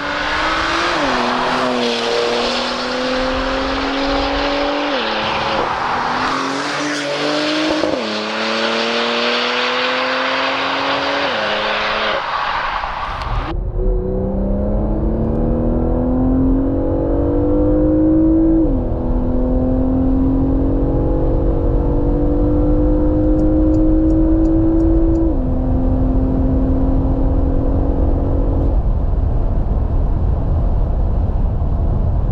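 Porsche Macan Turbo's twin-turbo V6 under full acceleration. It is first heard from the roadside as the car approaches, the engine note climbing and dropping with several quick upshifts. About halfway through it cuts to inside the cabin, where the engine pulls hard from about 100 to 200 km/h, rising between two upshifts before the driver lifts off near the end.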